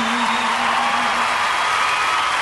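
Concert crowd cheering and screaming, with a held note wavering in vibrato from the stage that ends about a second in.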